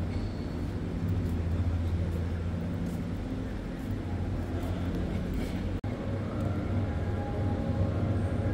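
Steady low hum of a large metal hangar's background noise, broken by a brief dropout about six seconds in.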